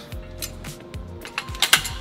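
A caulking gun clicking and rattling as it is handled and set aside after sealant has been applied, with a louder cluster of clicks about one and a half seconds in. Background music plays underneath.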